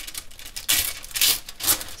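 A sheet of thin decoupage paper rustling and crinkling in a few short bursts as it is handled.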